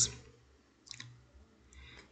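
The end of a spoken word, then near silence broken by a short faint click about a second in and a fainter one near the end.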